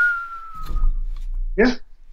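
A person whistling one slowly falling note, about a second long, imitating a fall off the edge after a crash.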